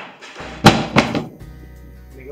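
Two loud, sharp knocks about a third of a second apart, followed by a steady hum.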